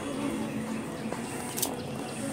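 Distant outdoor background noise with a faint steady hum underneath and a brief faint hiss about one and a half seconds in.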